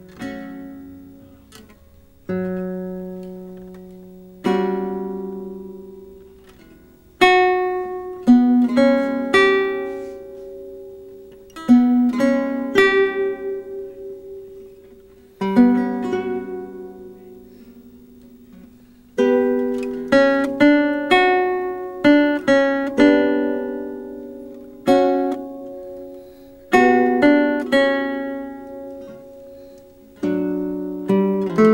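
Lute playing a slow, sparse melody of single plucked notes left to ring and fade, with a guitar adding sustained bass notes beneath. The notes come several seconds apart at first and closer together from about a quarter of the way in.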